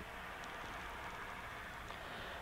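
Kinova JACO robotic arm's joint motors running with a faint, steady whir as the arm moves itself upright.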